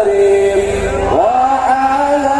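Sholawat, Islamic devotional singing, amplified over a sound system. The voices hold one long note, then glide up to a higher held note a little past a second in.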